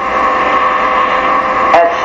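Steady electrical hum and hiss in the recording, several steady tones held together under a noisy haze.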